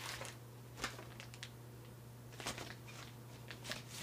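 Faint rustles and scuffs of paper and cardboard as a vinyl LP is slid into its paper inner sleeve and album jacket, a few separate light scrapes spread through, over a steady low hum.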